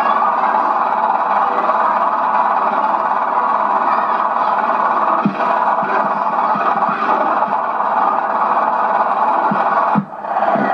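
A loud, steady hiss-like noise, like the worn soundtrack of an old home-movie transfer, with a few faint low knocks. It dips briefly right at the end.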